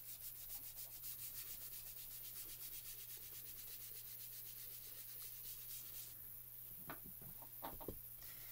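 Foam ink blending tool rubbed in quick short strokes over smooth Bristol card, dabbing on Distress Oxide ink: a soft, scratchy rubbing at about five or six strokes a second. The rubbing stops about six seconds in, and a few light taps follow.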